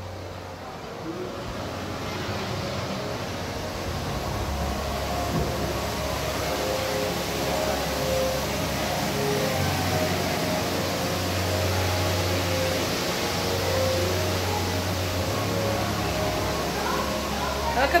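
Ambience of a busy indoor exhibit hall: distant overlapping voices over a low steady rumble, getting a little louder over the first few seconds.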